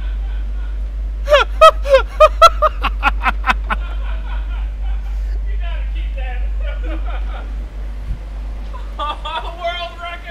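A man laughing in a run of quick, loud bursts, then further laughing and talk, over a steady low hum.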